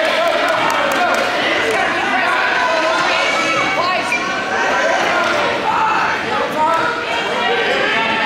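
Several voices talking and calling out over one another in a large, echoing gymnasium: spectator and coach chatter with no single clear speaker.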